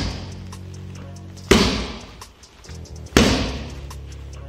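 Boxing glove jabs landing on focus mitts: three sharp smacks, evenly spaced about a second and a half apart, each with a short ring of room echo, over background music.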